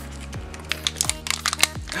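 Foil seal crinkling and crackling in quick, irregular clicks as it is peeled off a small plastic toy capsule, over faint background music.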